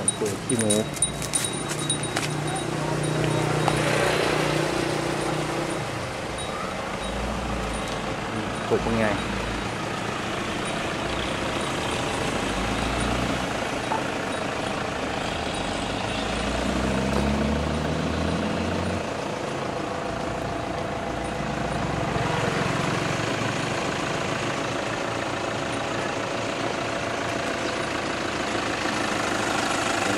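Outdoor ambience of people talking, with a low vehicle engine rumble running underneath, strongest in the middle stretch.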